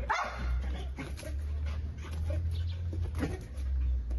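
A dog barking a few short times during play as it jumps up at its handler.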